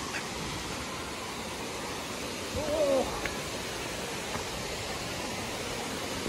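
Steady rushing noise of a waterfall and its stream, with a brief pitched call about three seconds in.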